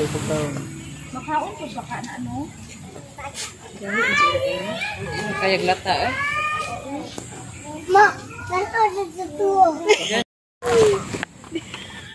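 Untranscribed chatter of children and adults, with high-pitched children's voices calling out about four to seven seconds in. The sound briefly cuts out just after ten seconds.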